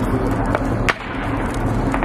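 Steady low engine drone with two sharp clicks, about half a second and about a second in.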